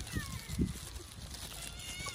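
Cats meowing: a short, high, falling meow near the start and another high meow near the end. A dull thump comes about a third of the way through.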